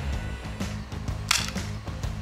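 A single sharp crack of a BB pistol shot, a little past halfway, over background music with a steady beat.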